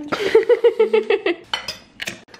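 Cutlery and dishes clinking at a meal table, with a few sharp clinks near the end. Over the first second and a half a high-pitched voice goes in quick repeated pulses, the loudest sound.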